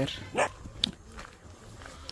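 A dog barking once, a short single bark about half a second in, followed by a faint click and low background.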